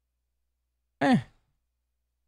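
Silence, broken about a second in by a man's short, falling "eh" between phrases.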